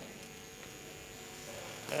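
Faint steady electrical hum and hiss from a microphone and loudspeaker system, with the echo of a man's voice dying away at the start and his speech starting again near the end.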